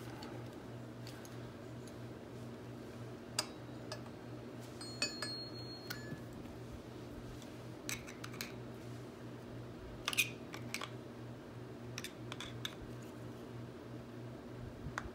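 Scattered light metal clicks and clinks as steel parts and a hand tool are worked at the end of an ATV rear axle, fitting a collar over the axle circlip; the loudest clink comes about ten seconds in. A steady low hum runs underneath.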